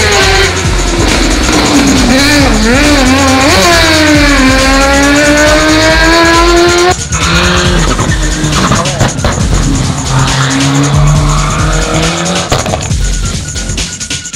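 Rally car engines on a hill climb, revving hard under acceleration, the pitch falling and climbing again through the gear changes. About seven seconds in a sudden cut brings a second car's lower-pitched engine, also accelerating.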